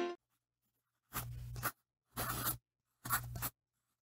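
Pen scratching across paper in three short strokes, each about half a second long and about a second apart, just after guitar music cuts off.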